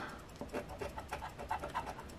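The edge of an Engelhard silver bar scraping the coating off a lottery scratch ticket: a quick run of short, faint scraping strokes.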